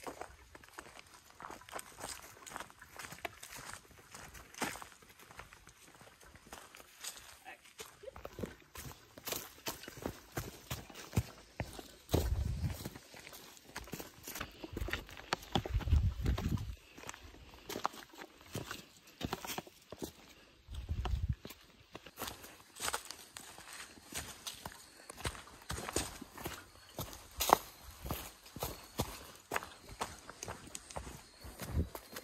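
Footsteps crunching and scuffing on a dirt trail covered in dry fallen leaves, an uneven run of steps, with a few low rumbles near the middle.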